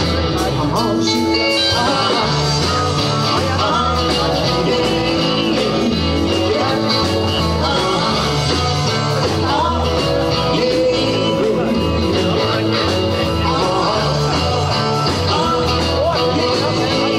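Live rock and roll band playing, with electric guitars over drums and a bass line moving from note to note, loud and steady.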